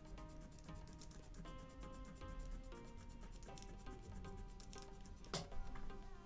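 Quiet background music of held notes that change every second or so, with one brief sharp knock about five seconds in.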